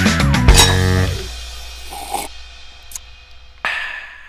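Rock-style band music with drum kit and electric guitar ends about a second in, its last chord fading out. Near the end comes one sudden short sound that rings on briefly.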